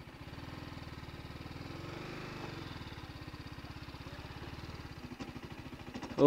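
TVS Apache RR 310's single-cylinder engine running steadily at low revs, an even pulsing beat.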